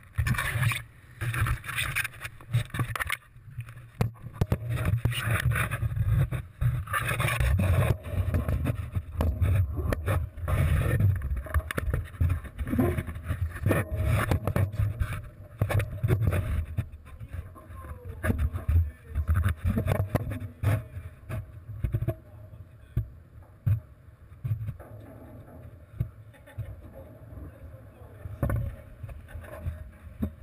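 Wind rumbling on an action camera's microphone, mixed with knocks and scrapes as the camera moves against the steel frame of a bridge. The knocking and buffeting are busiest through the first two-thirds and settle to a lower rumble after about twenty seconds.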